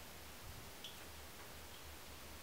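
Quiet room tone: a steady faint hiss over a low hum, with one small click a little under a second in.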